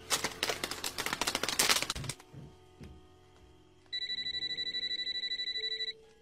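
Telephone ringing. A dense rattling burst fills the first two seconds. After a short pause, a steady, rapidly trilling ring starts about four seconds in and lasts about two seconds.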